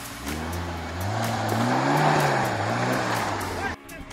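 Maruti Suzuki Gypsy 4x4's engine revving under load as it crawls through a deep rut on a dirt slope, rising in pitch to a peak about halfway and falling back. The sound cuts off suddenly near the end.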